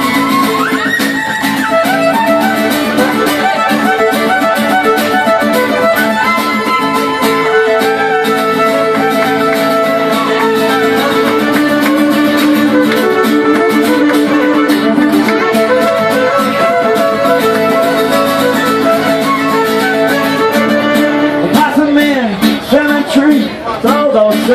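Live acoustic string band playing an instrumental passage led by fiddle over strummed acoustic guitar, amplified through PA speakers. A voice comes in near the end as the singing starts.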